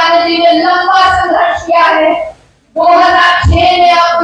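A woman's voice, amplified through a microphone, speaking loudly in long, drawn-out syllables, with a brief pause about two and a half seconds in.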